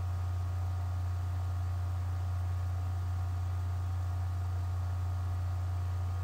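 Steady low electrical hum in a poor-quality stream recording, with fainter steady high tones above it and no other sound.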